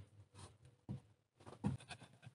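A few faint, short scrapes and rustles as a foam sleeping mat is laid and pressed down onto a bunk of split wood.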